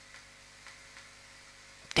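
A pause in speech: faint room tone and a low steady hum, with a few soft ticks, and the voice resumes right at the end.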